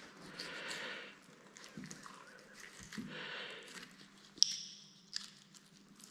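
Boning knife scraping and cutting along a deer's upper arm bone in short, soft strokes as the meat is freed from it. About four and a half seconds in comes a sharp metallic click with a brief high ring, followed by a couple of smaller clicks.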